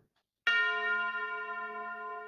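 A single bell-like chime struck once about half a second in, ringing on with several clear tones and slowly fading.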